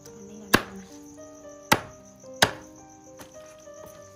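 Three cleaver chops through a boiled chicken onto a round wooden chopping block: sharp, loud strikes, the last two close together. Crickets chirp steadily behind them.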